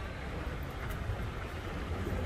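Steady low rumble and hiss of indoor background noise beside a running escalator, with handling noise from the camera as it swings round.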